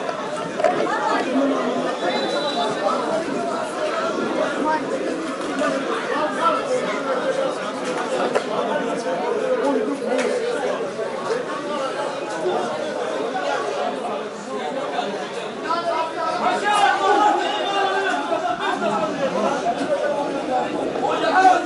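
Many people talking over one another at once: a steady hubbub of chatter with no single voice standing out.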